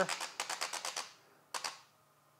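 Cameradactyl Mongoose 35mm film scanning holder clicking as the film is jogged forward to the next frame: a quick run of sharp clicks, about ten a second, for the first second, then a brief double click a little later.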